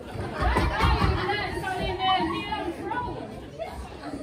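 Several voices talking, partly overlapping, with the echo of a large hall.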